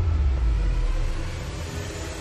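Deep rumble of a cinematic trailer boom, slowly fading, over a faint music bed.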